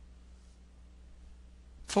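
A quiet pause with only a faint steady low hum in the recording, then a voice begins the spoken word "Four" right at the end.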